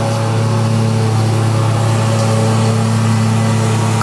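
A loud, steady, low-pitched hum with a stack of overtones, unchanging throughout.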